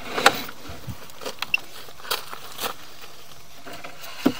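Sewer inspection camera's push cable being pulled back out of the line: a few scattered short clicks and knocks over a quiet steady background.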